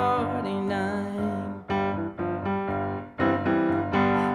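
Piano playing a slow ballad accompaniment of held chords, struck afresh a few times between sung lines.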